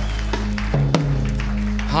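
Electric keyboard holding soft, sustained low chords that change once before the middle, with a few scattered hand claps.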